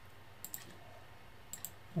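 Faint clicks of a computer mouse and keyboard: two quick pairs of clicks about a second apart, over quiet room tone.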